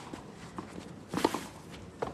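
Tennis rally on a clay court: a tight cluster of sharp knocks of racquet strings and ball, with the ball bouncing, a little over a second in, between fainter scuffs and steps of tennis shoes on the clay.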